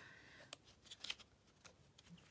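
Faint rustle and a few soft flicks of paper pages as a sticker book is leafed through by hand.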